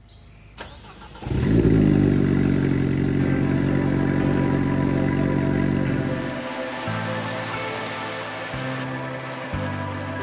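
A car engine revs up and holds a steady pitch for several seconds, then fades out under background music whose chords change from about six seconds in.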